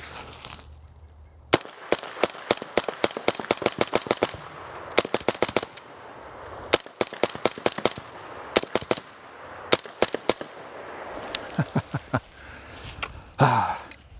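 Suppressed AR-15 rifle fitted with a GemTech suppressor bolt carrier, fired semi-automatically in rapid strings of several shots a second with short pauses between strings.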